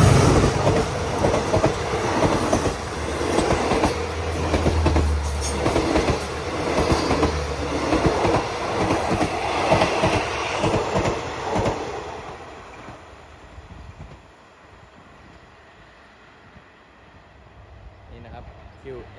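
QSY diesel-electric locomotive passing close, then its passenger coaches rolling by with a rhythmic clickety-clack of wheels over rail joints. The sound fades away about twelve seconds in as the last coach goes by.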